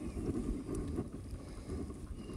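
Wind buffeting the microphone of a camera on a moving mountain bike: a steady, uneven low rumble, with tyre noise from the dirt trail mixed in.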